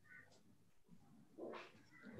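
Near silence: room tone, with a brief faint sound about one and a half seconds in.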